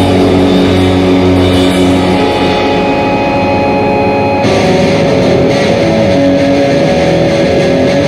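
Hardcore punk recording: distorted electric guitar holding long, ringing chords, with a change in the sound about four and a half seconds in.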